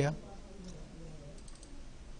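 End of a spoken word, then low room noise with a few faint clicks from a computer mouse.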